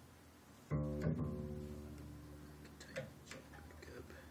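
A freshly fitted upright bass string is plucked twice in quick succession under tension, and a low note rings out and fades over about two seconds. A few light clicks follow near the end.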